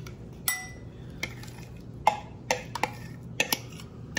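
A metal spoon knocking and scraping against glass bowls while chopped pickles and cheese are scraped out: about seven sharp clinks, the first, about half a second in, ringing briefly.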